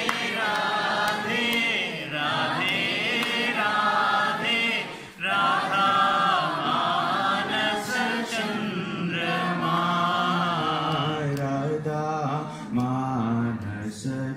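A group of voices, women among them, chanting a Hindu devotional chant together in unison, with a short break about five seconds in.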